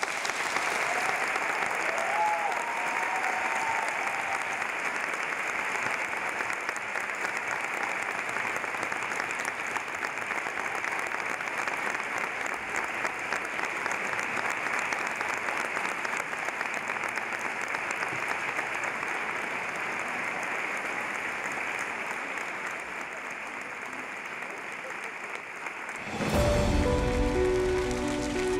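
A large audience applauding steadily and at length after a talk, with a brief cheer about two seconds in. The clapping eases slightly near the end.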